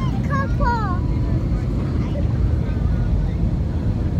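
Steady low rumble of an airliner cabin, engine and airflow noise heard from a passenger seat, with a voice briefly chattering or laughing in the first second.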